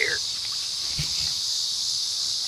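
Steady high-pitched drone of insects in the grass and trees, with a faint soft knock about a second in.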